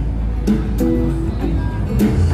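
Live Austropop band playing a short instrumental stretch between sung lines: strummed acoustic guitar over a steady bass, with a few percussion hits.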